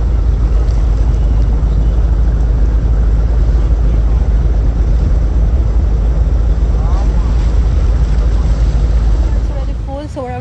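Loud, steady rumble of wind buffeting the microphone over open water, mixed with the running engine of a wooden abra water taxi.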